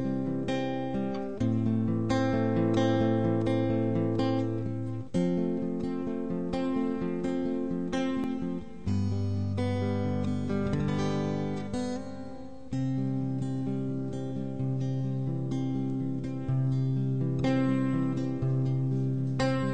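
Acoustic guitar strumming a slow instrumental intro, its chords changing every few seconds.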